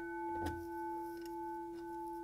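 The gong of an Edwards 10-inch single-stroke fire alarm bell ringing on after a stroke: a steady hum of several bell overtones. There is a faint click about half a second in.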